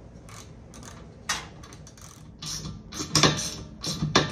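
Hand ratchet clicking in a series of short strokes as a hinge bolt is tightened, the strokes sparse at first and louder and closer together in the second half.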